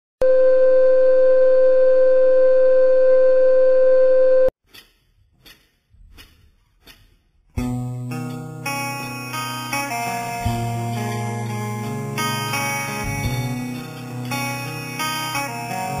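A steady test-card tone that runs for about four and a half seconds and cuts off suddenly, then a few faint ticks. About seven and a half seconds in, a band's ballad begins, with guitar.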